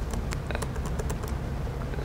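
Typing on a laptop keyboard: a string of light, irregular key clicks over a steady low hum.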